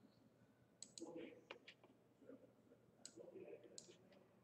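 Near silence with several faint, sharp clicks spread through it, typical of computer mouse clicks.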